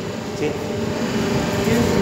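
Double-die hydraulic paper plate making machine running with a steady mechanical hum.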